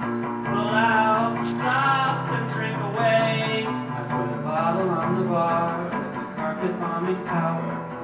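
A man singing while strumming an electric guitar, played live as one song.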